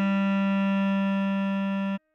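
Bass clarinet holding one long, steady low note, written A4 and sounding G below middle C, that stops abruptly near the end.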